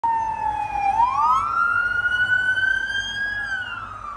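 Police car siren wailing: the pitch dips, climbs steeply about a second in, keeps rising slowly, then falls near the end.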